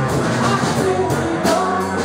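A small rock band playing live: electric guitars and a drum kit, with a singer's voice over them, loud and steady with a regular beat of drum and cymbal hits.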